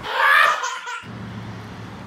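A loud burst of high-pitched laughter lasting about a second, then a cut to a steady low hum.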